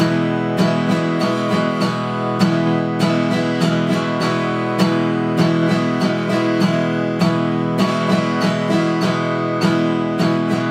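1924 Martin 0-28 acoustic guitar strummed on an E major chord in a steady down, down, down-up, down-up pattern, with a metronome ticking along at 100 beats per minute.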